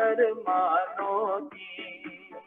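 A man singing into a handheld microphone: drawn-out notes whose pitch wavers and slides, with a short break about halfway through. It is heard over a video call, so the sound is thin with no high treble.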